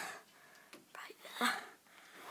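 A child's quiet, almost whispered speech: one short word about one and a half seconds in, with little else around it.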